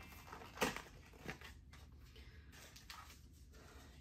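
Faint handling sounds from unpacking a cardboard camera box: a few soft, scattered rustles and light taps.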